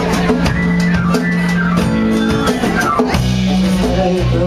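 Live rock band playing guitar over a drum-kit beat, with held bass notes underneath.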